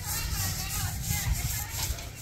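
Faint, distant voices talking over a low, steady rumble.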